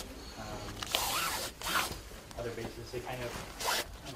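Zipper on the lower leg of olive-green flight clothing being worked by hand: a longer zip about a second in, a shorter one shortly after, and another near the end.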